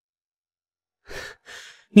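Silence for about a second, then two short audible breaths, and a man's voice starts to speak at the very end.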